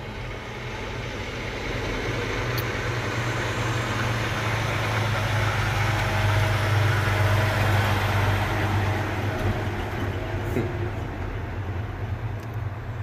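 A loud vehicle passing close by, its engine and road noise with a deep hum swelling over several seconds to a peak partway through and then fading.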